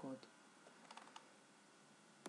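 Near silence: room tone with a few faint computer clicks about a second in.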